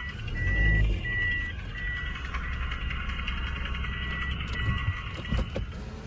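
A car's electronic warning beeper sounding a short, steady high beep over and over, about every three quarters of a second with a brief pause midway, heard from inside the cabin over the low rumble of the car's engine.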